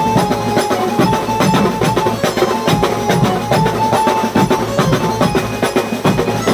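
A Mumbai beats band playing a fast, dense rhythm on bass drums, snare-type drums and cymbals, with a repeating melody of held notes over the drumming.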